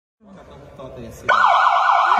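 Police car siren switched on about a second in, sounding loud with a rapid, repeating warble of about ten sweeps a second.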